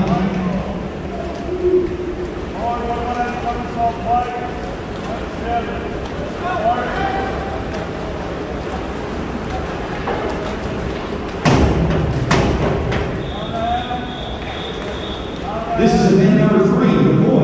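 Indoor swimming-pool race ambience: indistinct shouting from the pool deck over a steady wash of splashing water. Two sharp thumps come about eleven and twelve seconds in, and a high steady tone sounds for about two seconds near the end.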